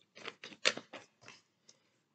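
A deck of oracle cards being shuffled by hand, the cards rustling and flicking against each other in a string of short bursts. The loudest burst comes about two-thirds of a second in.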